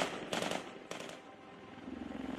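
Rifle fire: the tail of one shot, then two more shots about half a second apart, each trailing off in an echo.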